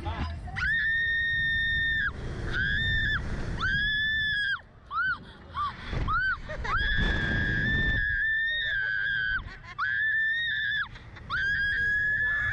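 A woman screaming on a SlingShot reverse-bungee thrill ride: long, high-pitched screams held a second or more, one after another, with short yelps between them. Wind rumbles on the microphone underneath.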